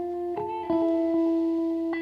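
Background music: plucked guitar notes that ring on, with new notes struck about half a second in and again near the end.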